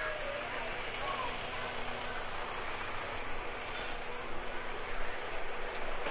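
Steady rush of fast-flowing river water, with faint voices of people nearby.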